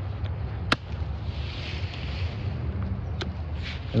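Hand clippers snipping side branches off a bamboo culm: two sharp snips, about a second in and near the end, with a rustle of bamboo leaves between them.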